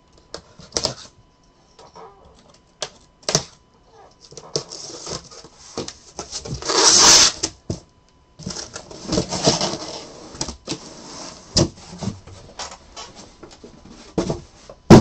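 A cardboard shipping case being opened and the sealed boxes inside handled on a table: scattered knocks and clicks, a loud rasp lasting about a second around the middle, then rustling and tapping.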